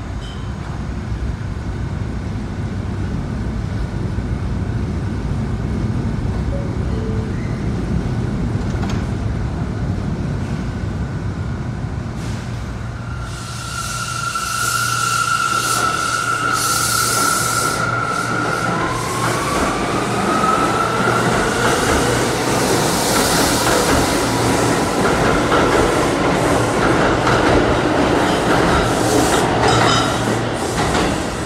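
New York City Subway R179 train standing at the platform with a steady low hum, then pulling out about halfway through: the electric propulsion whine holds one pitch, then rises as the train picks up speed. Wheel and rail noise with hiss builds as the cars roll past.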